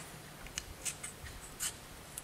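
Faint light scrapes and small clicks, about three of them, as the steel blade and spring of a folding knife are handled and lined up against its horn handle.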